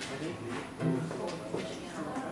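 A brief snatch of acoustic guitar and upright bass playing, mixed with a man talking.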